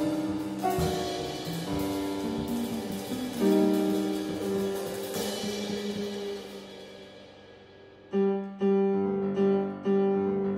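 Jazz piano playing sustained chords that ring out and fade, with cymbal washes from the drum kit on some of the chords. Near the end, short repeated chord stabs come in.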